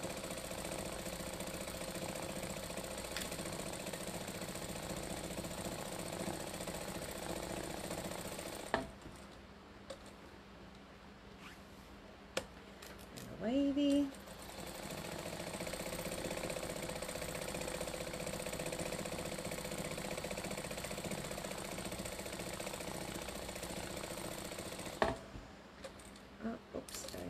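Sewing machine running steadily as it free-motion stitches through a layered quilt, pausing from about 9 to 15 seconds in, with a brief rising tone during the pause, then stitching again until it stops about a second before the end.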